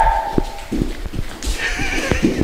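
A man's shrill, high-pitched shriek held on one note, cutting off a little under a second in, followed by irregular thumps of bare feet on the floor and a short wavering squeal near the end.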